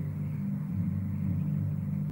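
A steady low droning rumble made of several deep tones held together: a sustained drone from the soundtrack of an inserted film clip.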